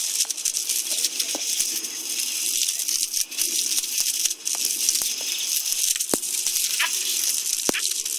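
Water from a garden hose spraying and pattering onto grass: a steady high hiss with scattered light ticks and splashes.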